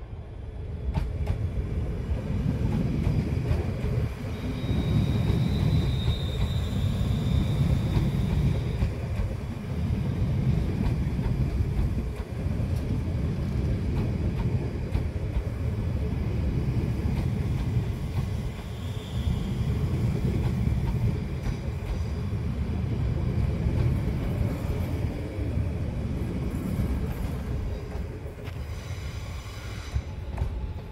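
Class 350 Desiro electric multiple unit running past along the platform: a steady, heavy rumble of wheels on rails. A thin high-pitched squeal lasts a few seconds from about four seconds in, and a short one comes near the middle.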